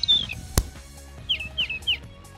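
Animated short's soundtrack: music with a single sharp hit about half a second in, then three quick, short falling chirps near the end.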